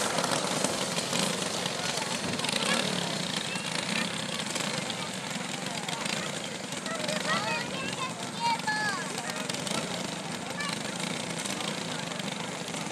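Go-kart engines running at a distance as the karts circle the track, with indistinct voices nearby, plainest about seven to nine seconds in.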